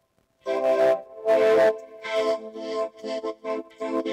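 Speech run through a DIY analog vocoder: robotic words come out on a steady synth pitch that does not move with the voice, starting about half a second in.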